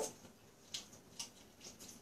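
A few faint, brief handling noises from the burger and its grease-soaked paper wrapping as they are moved and lifted; otherwise the room is quiet.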